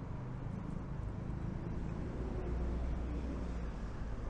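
City street ambience: a steady low rumble of car traffic, swelling slightly past the middle.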